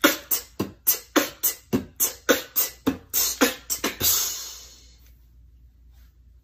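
Beatboxing: an even run of vocal drum hits, about four a second, ending in a longer hissing sound a little after four seconds in, then stopping.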